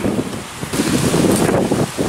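Wind buffeting the camera microphone in two rough gusts, the second and longer one starting a little under a second in.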